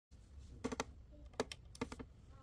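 Quick plastic clicks from the spring-clip wire terminals on an LG home-theatre tower speaker, pressed and let go as bare speaker wire is pushed in. The clicks come in three small clusters of two or three.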